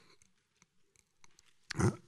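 Near silence with room tone and a few faint clicks through a pause in a talk, then a man's short voiced syllable near the end.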